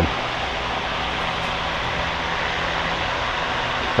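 Greenhouse ventilation fan running steadily: an even rushing noise with a faint low hum under it.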